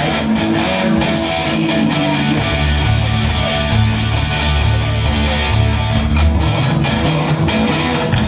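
Live rock band playing an instrumental passage with guitar and bass; there is no singing.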